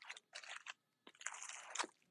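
Faint rustling and crinkling of scrapbook paper sheets and their clear plastic wrap, shifted and flipped by hand: a few short rustles, then a longer one in the second half.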